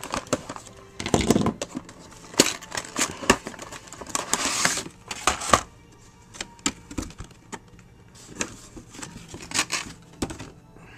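Cardboard figure box being opened and handled: a string of sharp clicks and taps as the packaging is worked, with a longer scraping rustle of cardboard and plastic tray sliding about four seconds in.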